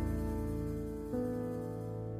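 Slow jazz piano trio music: a held piano chord dies away, and a new, softer chord comes in about a second in.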